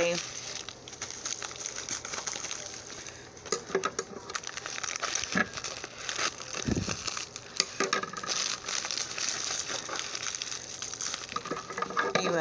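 Plastic packaging and a mailer envelope crinkling and rustling as fingers handle them, with many small crackles and clicks and a soft thump about two-thirds of the way through.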